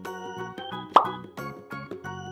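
Background music of short pitched notes, with one short plop sound effect about a second in, the loudest sound here, its pitch dropping quickly.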